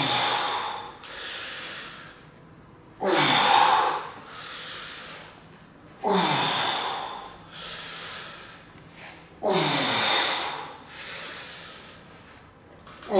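Hard, forceful breathing of a man doing slow dumbbell bench presses with 42.5 kg dumbbells: a loud exhale roughly every three seconds, each starting with a short grunt that falls in pitch, then a quieter breath in about a second later.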